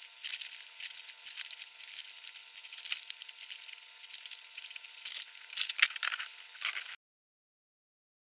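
Room sound fast-forwarded at ten times speed: a dense, high-pitched chatter of tiny clicks and rustles over a faint steady hum, cutting to dead silence about seven seconds in.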